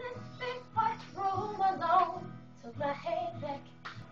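A girl singing a slow song solo, her voice sliding between held notes in short phrases, over a faint steady accompaniment.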